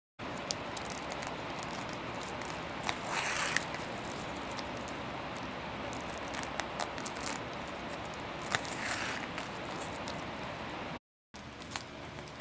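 Fabric being handled while velcro is sewn onto it by hand: faint rustling and small clicks over a steady background hiss, with two brief swishes about 3 and 9 seconds in. The sound cuts out briefly near the end.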